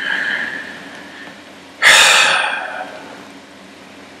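A man's loud breath out close to the microphone: a sudden exhale or snort about two seconds in that fades over about a second.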